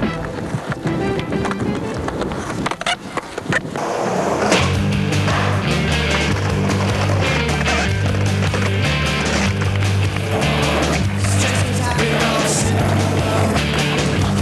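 Skateboard sounds, wheels rolling on concrete and a couple of sharp board clacks near the three-second mark, under fading music. Then, about four and a half seconds in, a loud rock song with a strong bass line starts.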